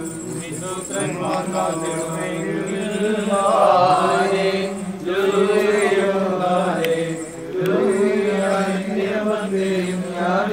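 Orthodox liturgical chanting: a melodic chanted prayer with long held notes that step between pitches, sung without pause.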